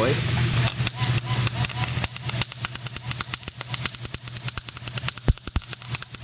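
Electric arc welding on steel: the arc crackling and spitting irregularly, with sharp pops, from about half a second in, over a steady low hum. The welder is set too cold: it needs to be hotter.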